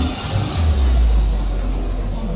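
A small parade car driving slowly past close by, its low steady rumble coming in about half a second in, with music playing underneath.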